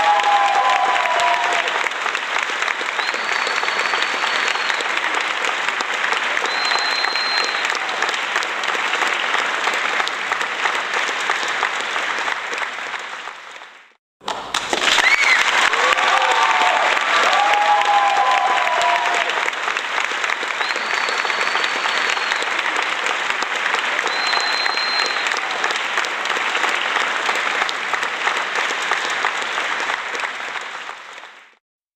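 Recorded applause with crowd cheering and a few whistles, played as a looped track. It fades out to silence about halfway through, then starts over with the same clapping and whistles.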